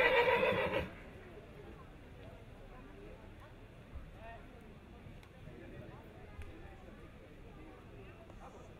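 A horse whinnying: one loud, long call that ends about a second in, followed by a low background with faint voices.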